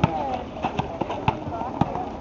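A basketball being dribbled on an outdoor asphalt court: a few sharp bounces, roughly half a second apart, with players' and spectators' voices behind them.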